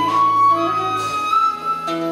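Flute playing long held notes in a short instrumental passage between sung lines, over a small live ensemble of harp, strings and upright bass.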